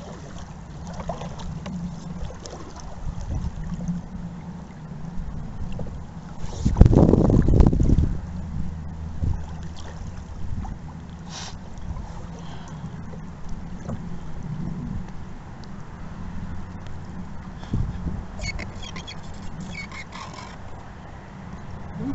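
Canoe being paddled: paddle strokes and water movement along the hull, with wind rumbling on the microphone. A loud low rumble lasting over a second comes about seven seconds in.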